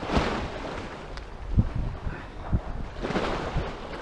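Wind buffeting the camera microphone in uneven gusts, with a few short low thumps in the middle.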